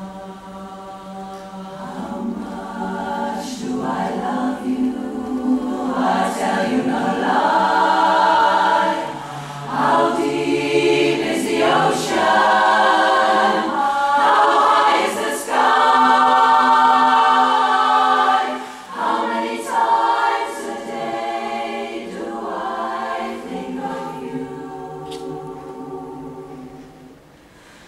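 Women's barbershop chorus singing a cappella in held close-harmony chords, swelling loudest through the middle and growing softer toward the end.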